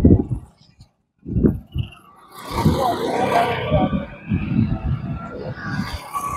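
Wind buffeting a clip-on microphone in low rumbling gusts, with short gaps between them. From about two seconds in a steadier rushing noise joins in.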